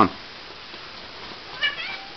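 A domestic cat meowing once, briefly and high-pitched, near the end.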